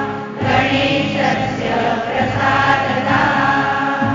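A group of voices singing a devotional chant over a steady low drone, with a brief breath between phrases just after the start.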